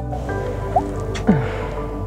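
Background music, with short wet sipping and swallowing sounds as coffee is drunk from a travel mug, about a second in.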